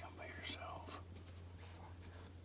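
A person whispering briefly in the first second, a soft hiss on one sound, followed by a faint steady low hum.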